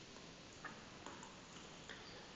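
Near silence with three faint ticks, a stylus tapping a drawing tablet while handwriting.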